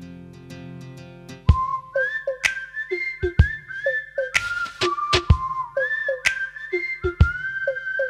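Instrumental opening of a Tamil film song: a held chord fades out, then about a second and a half in a whistled melody with sliding notes begins over a beat of percussion hits about once a second.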